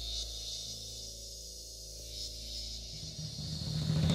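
Quiet dark ambient background drone: a steady low hum under a high hiss that swells briefly twice, the low end growing louder near the end.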